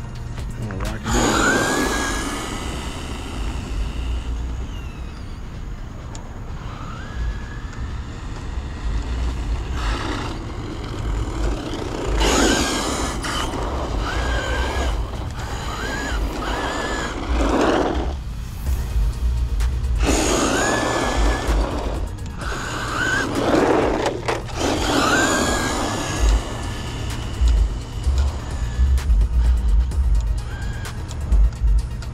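An electric RC truck motor whines in repeated bursts, rising in pitch with each acceleration, over background music.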